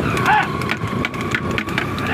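Wooden buffalo racing buggy clattering and knocking along a paved road behind a trotting buffalo, with a steady low rumble from the wheels and irregular sharp knocks throughout. A brief high call rises and falls just after the start.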